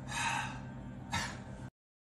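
Two sharp breaths from a man: the first lasts about half a second, and a shorter one follows about a second later. The sound then cuts off suddenly.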